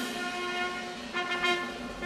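High school wind ensemble opening a concert march with sustained brass chords; the harmony shifts to a new chord about a second in.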